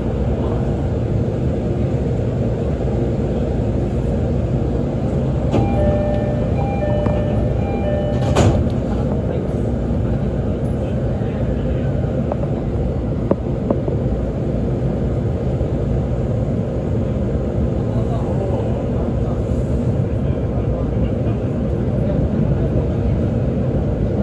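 Inside an E531-series commuter train at a station: a steady rumble of the train and its surroundings. A short run of electronic chime tones comes about six seconds in and ends in a sharp knock, as with a door-closing chime followed by the doors shutting. The train then pulls away.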